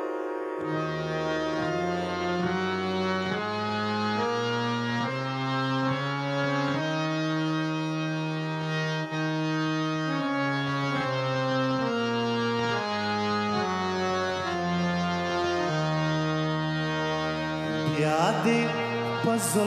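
Harmonium playing a slow tune over held chords and a low bass line, its reedy notes changing about once a second.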